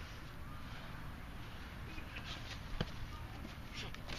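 Quiet outdoor background with a steady low rumble, and a few faint short knocks from the kickboxing sparring between about two and three seconds in.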